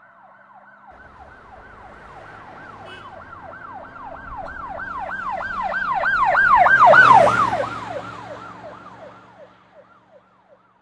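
An emergency vehicle's siren in a fast up-and-down yelp, about three sweeps a second. It grows louder as the vehicle approaches, peaks about seven seconds in with engine and road noise as it passes, then fades away.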